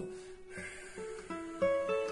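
Background music: plucked guitar notes picking out a slow melody, each note ringing on after it is struck.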